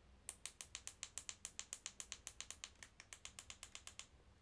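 Rapid, even clicking of small hard clicks, about eight a second, starting just after the start and running on steadily.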